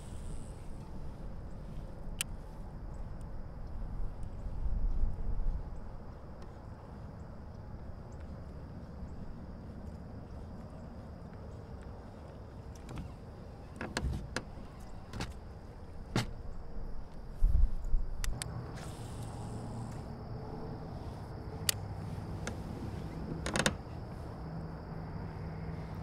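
Baitcasting reel being cranked on a lure retrieve, with scattered sharp clicks and knocks of rod and kayak handling. A low rumble swells twice, about four seconds in and again near eighteen seconds.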